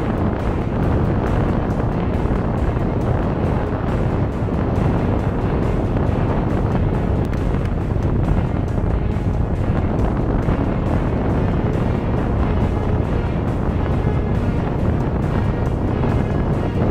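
Motorboat running at speed across open water, its engine and the rushing wind buffeting the microphone as a steady, loud noise, with background music laid over it.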